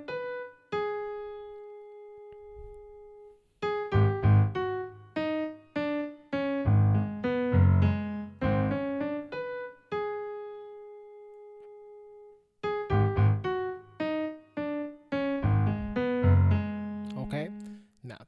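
Piano played slowly with both hands: a right-hand figure over low left-hand bass notes. Twice it pauses on a chord left to ring for a few seconds.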